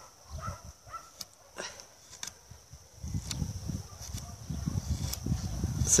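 A pruning knife (cosor) paring bark and wood at a fresh cut on a young quince sapling, a few faint scrapes and clicks, smoothing the rough saw cut so the wound heals faster. A low rumble on the microphone sets in about halfway.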